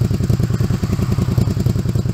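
Honda VTZ250's liquid-cooled V-twin engine idling steadily, heard at the exhaust silencer as a rapid, even train of exhaust pulses.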